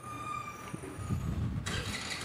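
Faint outdoor background noise: a steady high-pitched whine that fades out a little over a second in, over a low rumble, with a hiss rising near the end.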